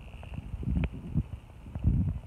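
Irregular low thumps and rumble on the microphone, with one sharp click a little under a second in.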